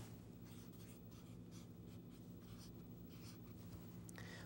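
Faint scratching strokes of a felt-tip marker writing on paper.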